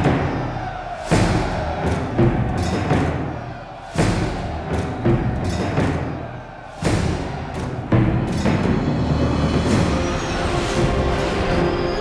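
Dark orchestral film score with heavy drum hits: five loud strikes, each fading away, the biggest about one, four and seven seconds in.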